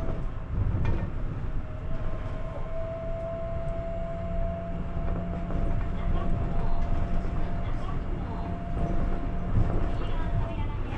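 Interior of an Osaka Metro New Tram car in motion: the rubber-tyred automated car gives a continuous low rumble. From about two and a half seconds in, a steady whine holds one pitch over the rumble.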